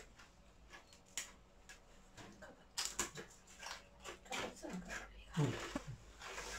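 Cutlery on a metal serving tray and dishes during a meal: scattered light clicks and taps, with a brief low murmur of voices in the second half.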